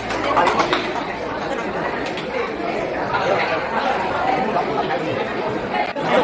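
Chatter of several people talking over one another, a group of voices in a room.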